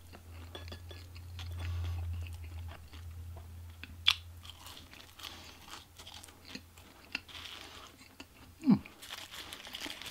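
Close-miked chewing of french fries with small wet mouth clicks. There is a sharp click about four seconds in, and near the end a short sound that falls steeply in pitch.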